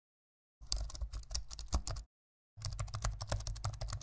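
Rapid keyboard typing clicks in two runs of about a second and a half each, with a short pause between them.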